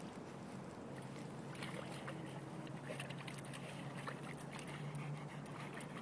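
Retrievers digging in a muddy puddle: irregular wet scrabbling and splashing of paws in mud and water, over a faint steady low hum.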